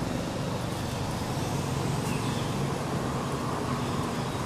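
Steady low rumble of road traffic from a nearby road.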